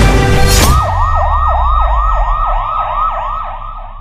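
Emergency-vehicle siren in a fast yelp, its pitch sweeping down and up about three times a second, starting just under a second in after the music stops and fading toward the end.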